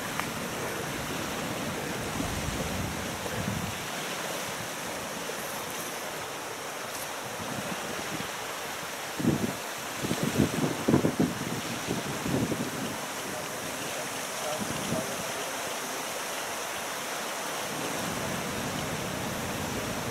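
Wind buffeting the microphone over the steady rush of choppy, wind-driven water, with a run of stronger gusts about halfway through.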